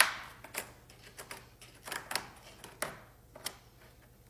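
A small metal tool scraping and clicking inside the nostril of a deer mount, prying out loose chunks of broken hard-plastic septum. There is a sharp click at the start, then irregular scratchy clicks about every half second.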